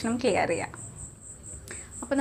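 A cricket chirping steadily, a high pulsed trill of about five pulses a second, behind a few words of a woman's speech at the start.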